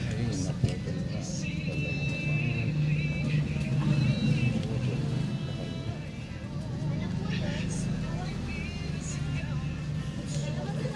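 Background voices and music over a steady low hum.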